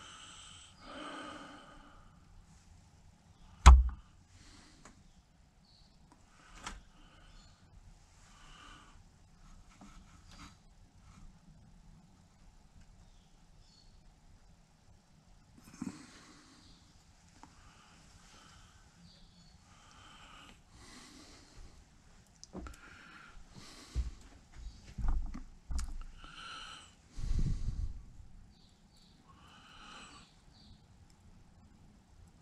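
A person breathing audibly close to the microphone while doing fine hand work on model-ship rigging, with small handling sounds. One sharp, loud knock comes about four seconds in, and a few dull bumps come near the end.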